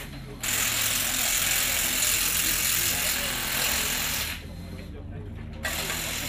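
Loud hissing rush, like pressurised air or spray from a hose, in bursts: a long one of about four seconds, with shorter ones at the start and near the end, over a low steady hum.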